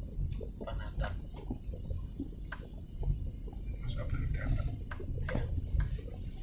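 Low rumble of a car's engine and road noise heard inside the cabin while it drives slowly in traffic, with scattered light clicks and faint indistinct voices in the second half.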